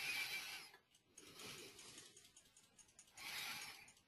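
Faint breaths close to a microphone, one at the start and one near the end, with soft clicking in between.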